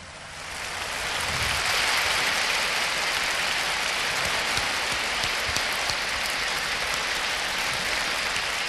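A large audience in a concert hall applauding after a song, swelling over about the first second and then holding steady.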